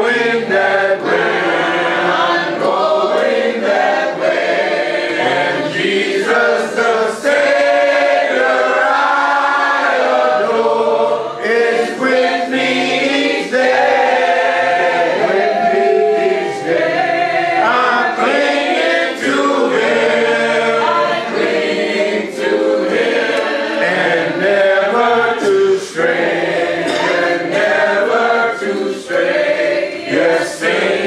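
Church congregation singing a hymn together a cappella, many voices in unison and harmony with no instruments, carrying on phrase after phrase with brief breaths between lines.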